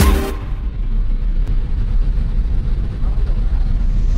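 A steady low rumble, with the end of the music heard only briefly at the start.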